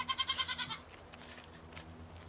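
A goat bleating once, a short high-pitched bleat with a fast wavering quiver, lasting under a second.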